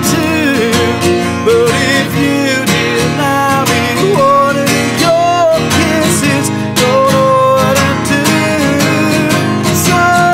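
A man singing over a strummed acoustic guitar.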